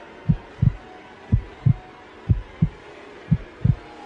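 Slow heartbeat, a paired low thump (lub-dub) repeating about once a second, four beats in all.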